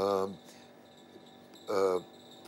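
A man's voice: two short drawn-out hesitant syllables about a second and a half apart, with a quiet pause between. A faint steady high-pitched tone sits underneath.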